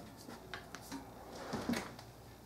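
Faint handling noise of a brass euphonium's valve section being lifted and turned in the hands: a few light clicks and rustles of metal and packing.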